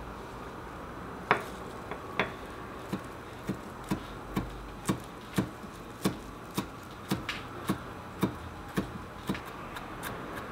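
Chef's knife chopping Italian parsley on a wooden cutting board: the blade knocks on the board about twice a second, starting a little over a second in.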